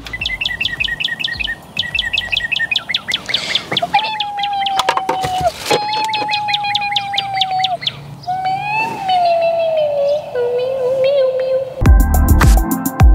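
Birdsong: a fast run of high chirps for the first few seconds, then long whistled notes, the last ones gliding down and wavering.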